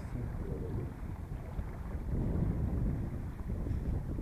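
Wind buffeting the microphone aboard a small sailboat under way, a steady low rumble, with the wash of choppy water along the Bruma 19's hull.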